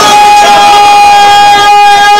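A man's voice holding one long, high, steady sung note through a loud PA system during a qasida recitation.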